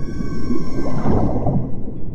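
Whale call sound effect over a low, steady drone, swelling about a second in.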